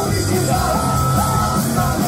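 Korean punk rock band playing live: electric guitars, bass guitar, drums and accordion, with a lead vocal over the band.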